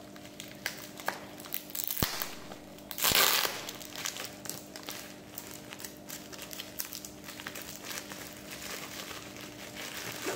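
Plastic bubble wrap crinkling and crackling in irregular bursts as it is handled and pulled open around a boxed package. The loudest burst of crinkling comes about three seconds in.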